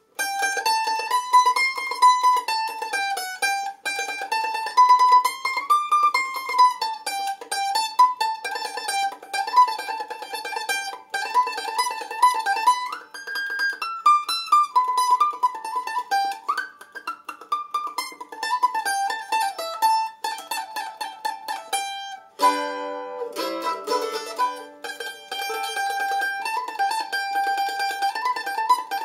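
A steel-strung A-style mandolin picked rapidly with a pick: fast repeated strokes carrying a single-note line that winds up and down the scale as a practice drill. A short cluster of lower notes comes about three quarters of the way through.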